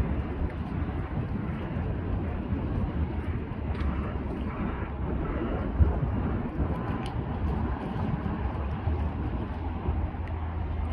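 Low, steady drone of the marine diesel engines of a small cargo ship and its pilot boat manoeuvring across the river, with wind rumbling on the microphone.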